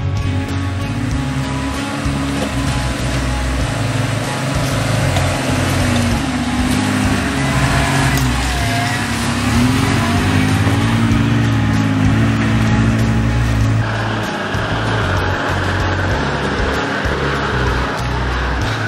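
Four-wheel-drive engine revving up and down as the vehicle climbs a rutted dirt track, with background music playing over it.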